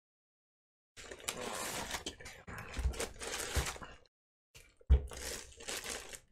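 Foam packing end pieces and plastic wrap being handled and pulled off a boxed bench power supply: rustling and crinkling in stretches, with a few dull thumps as pieces are set down, the loudest about five seconds in.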